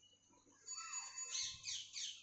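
Faint high-pitched chirping: a quick run of short falling notes in the second half, after a single gliding tone, with a small animal's or bird's call.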